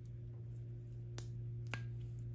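Two sharp clicks about half a second apart as the metal snap clips on a clip-in hair extension weft are handled, over a steady low hum.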